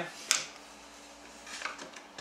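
Trading cards and a foil card pack being handled on a table: a short, sharp rustle about a third of a second in, then a few fainter rustles near the end.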